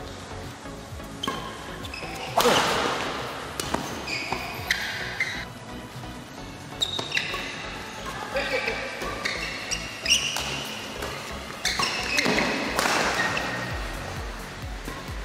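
Badminton rally: rackets striking the shuttlecock in sharp cracks, and short high squeaks of court shoes on the court mat. There are two louder bursts of noise, one about two and a half seconds in and one near the end.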